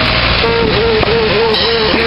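Street noise with a box truck's engine running as a low, steady rumble. A wavering pitched sound joins about half a second in.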